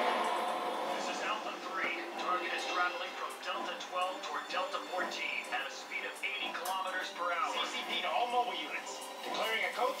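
A television playing English-dubbed anime: voices speaking over background music, heard through the TV's speaker and thin, with no bass.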